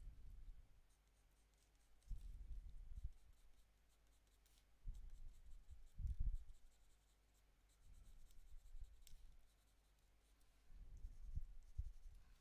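Coloured pencil strokes on toned drawing paper: faint scratching in short spells every two or three seconds, with brief pauses between them.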